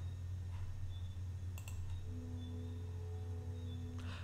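A single computer mouse click about a second and a half in, over a steady low electrical hum, with faint steady tones in the second half.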